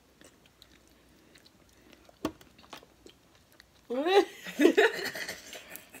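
Faint close-up eating sounds: soft chewing and sucking sauce off fingers, small wet clicks, and one sharper click about two seconds in. From about four seconds in, voices laughing and exclaiming.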